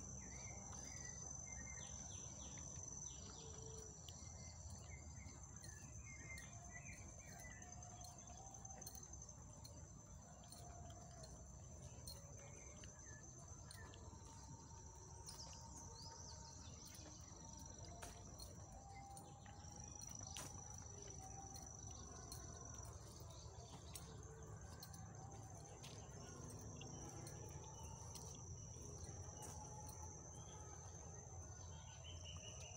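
Faint, steady high-pitched trill of insects in woodland, with a few short bird calls lower down.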